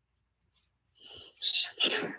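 Dead silence for about a second, then a person's voice, breathy and whispery, beginning a reply.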